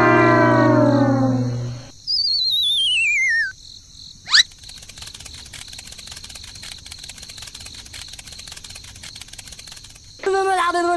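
Cartoon comedy sound effects: a long horn-like tone sliding down in pitch for about two seconds, then a wobbling whistle falling steeply, a quick upward swoosh, and from there on crickets chirping steadily.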